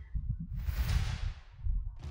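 Wind buffeting the microphone in an uneven low rumble, with a rushing swell of noise that rises about half a second in and fades away after about a second.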